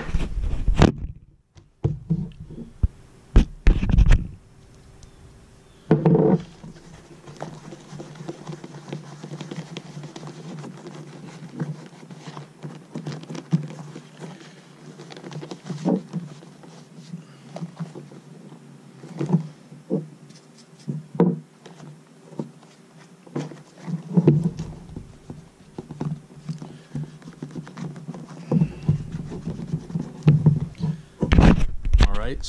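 Hands rubbing conditioner into a leather baseball glove: soft rubbing and handling of the leather, with scattered knocks of the glove against a wooden table and a few louder thumps in the first few seconds. A faint steady hum sits underneath from about six seconds in.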